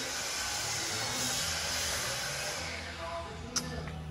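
Steady rushing, hiss-like noise, fading about three seconds in, followed by a single click.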